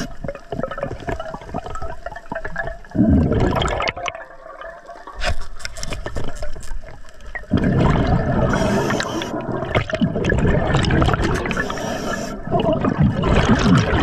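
Scuba diver breathing through an Atomic regulator underwater: the rush of exhaled bubbles comes in irregular bursts, with a quieter lull about four seconds in and a long unbroken stretch of bubbling from about eight to twelve seconds.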